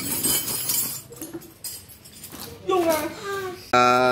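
Voices talking without clear words, loudest near the end, after a brief bright rustle of handled parts at the start.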